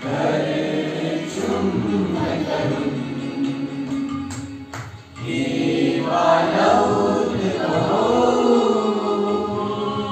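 A group of children and teenagers singing a song together as a choir. Their singing drops away briefly about halfway through, with a couple of faint clicks, then comes back louder.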